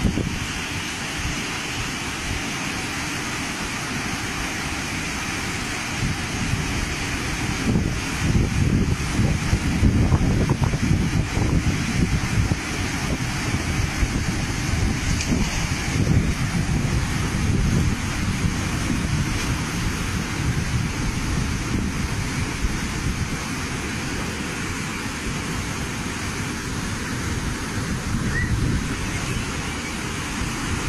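Continuous noise of heavy rain and rushing floodwater, with gusts of wind buffeting the microphone in low rumbles that are strongest about eight to twelve seconds in.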